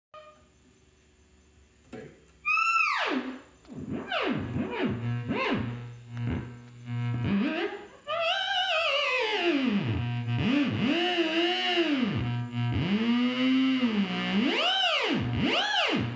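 Theremin played by hand movements near its antennas: after about two seconds of near quiet, a pitched tone slides in wide swoops up and down, wavering in places. A steady low hum sits beneath it from about halfway on.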